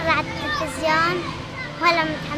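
A young girl talking in Arabic.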